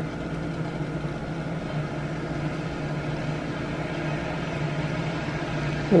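A steady low mechanical hum, even in level with no breaks.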